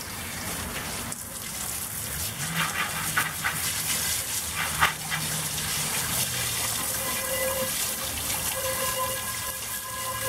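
Garden hose spray nozzle spraying water into a cast iron Dutch oven and splashing onto a plastic tarp, rinsing the pot after its vinegar soak. The spray runs steadily, with a few sharper splashes around the middle.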